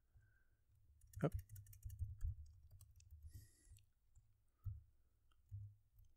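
Faint computer-keyboard typing: a run of light key clicks, with a couple of duller low knocks near the end. A short spoken "Oh" comes about a second in.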